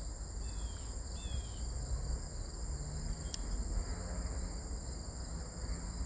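Crickets trilling steadily and high-pitched, with two brief faint chirps about half a second and a second in, over a low background rumble.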